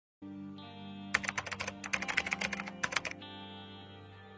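Rapid computer keyboard typing, a run of keystrokes lasting about two seconds, starting about a second in with a brief pause near the end. Under it, music holds a steady chord.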